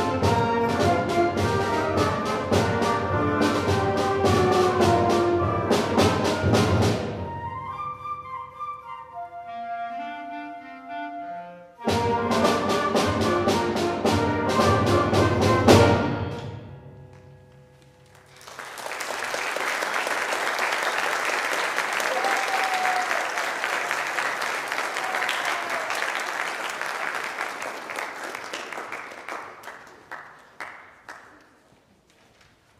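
High school concert band playing loud brass-and-percussion passages with a softer stretch between them, ending on a final loud chord about halfway through. After a short pause the audience applauds, and the clapping fades near the end.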